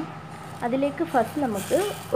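A woman speaking, over a steady low hum.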